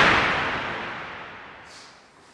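Transition sound effect: a noisy whoosh that peaks right at the start and fades away over the next two seconds.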